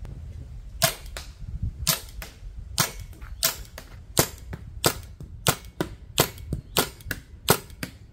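A paintball marker fired repeatedly at a target: a string of about a dozen sharp shots at uneven intervals, roughly one to two a second, starting just under a second in.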